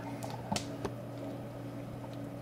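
A steady low hum of background room noise, with two faint clicks a little after half a second in and just under a second in.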